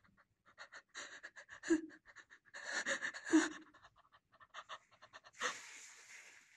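A person panting, quick short breaths with a couple of brief voiced catches in them, then a burst of hissing noise near the end.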